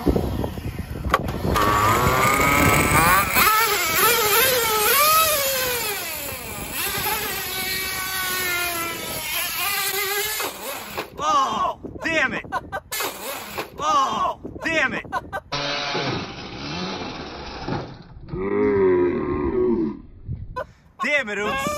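Traxxas Nitro Sport RC truck's nitro engine revving, its pitch rising and falling. Later it comes in shorter bursts as the truck drives off. It has no idle, and the owner suspects the clutch may be toast.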